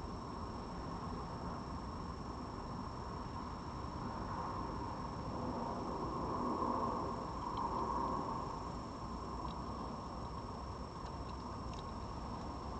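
Steady background hiss, swelling a little about halfway through; in the second half, and more near the end, faint clicks of a red fox crunching dry food from a plate.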